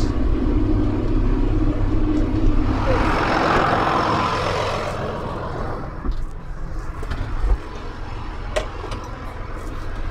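A John Deere 7810 tractor's six-cylinder diesel engine runs steadily on the road, heard from inside the cab. A rushing noise swells and fades about three to five seconds in. After that the engine sound falls to a quieter hum, broken by a few sharp clicks and knocks as someone climbs into the cab.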